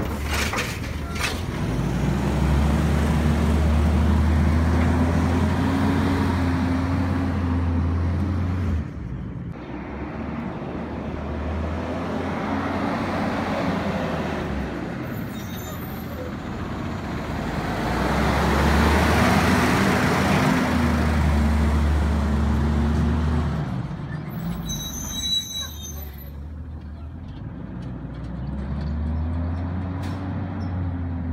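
CNG garbage truck's engine running and pulling away, its pitch rising through the gears with several shift breaks, loudness swelling and fading as the truck passes. A brief high-pitched sound comes in about 25 seconds in.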